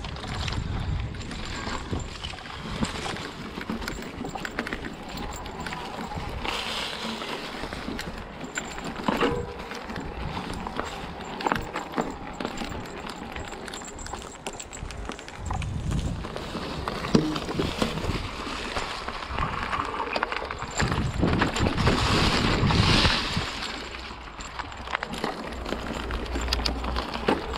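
Hardtail e-mountain bike running down a leaf-covered, rooty dirt trail: tyres rolling over dirt and leaves, with the bike rattling and knocking over roots and bumps, and wind rumbling on the camera microphone. The rattling and rumbling get louder near the end.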